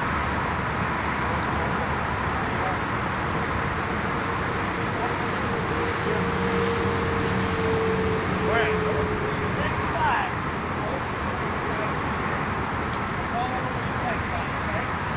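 Steady outdoor background noise of the kind distant road traffic makes, with a faint droning tone from about five to nine seconds in.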